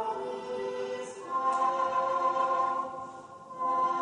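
A choir singing a slow sacred chant in long held notes, changing pitch from phrase to phrase, with a short dip between phrases near the end.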